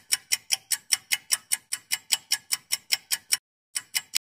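Clock-style ticking sound effect of a countdown timer: quick, even ticks about five a second, which stop about three and a half seconds in, followed by two or three more ticks near the end.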